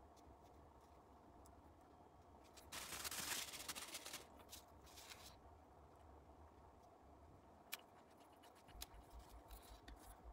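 Faint handling noises of a small metal airgun regulator being fitted into its housing: a scraping rub about three seconds in, scattered light clicks, and one sharp click near eight seconds. In the last second come soft, rapid low pulses.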